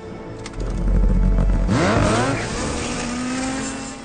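Small snow vehicle's engine revving hard as the throttle grip is twisted. A low rumble rises quickly in pitch about two seconds in, then settles into a steady, higher drone as it pulls away.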